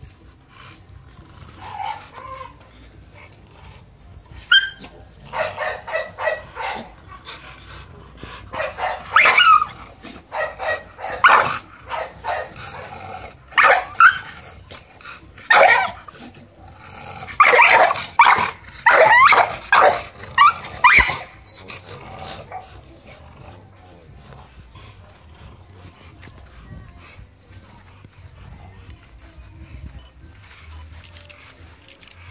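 Pit bull-type dogs barking loudly in clusters of barks from about five seconds in until about twenty-one seconds in, then falling quiet.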